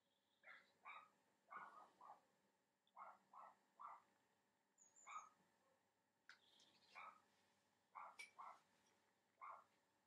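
A dog barking outside, heard faintly from indoors: about fourteen short barks, often in twos and threes.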